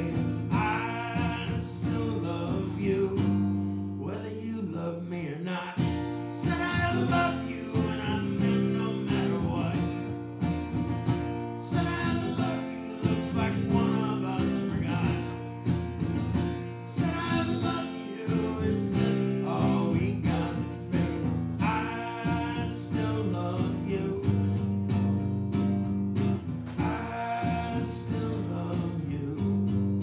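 Solo acoustic guitar strummed steadily through an instrumental break of a live song, with a swell of higher melody notes returning every four to five seconds.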